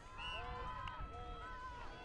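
Players' voices calling and talking on the field, distant and indistinct, over a low outdoor rumble.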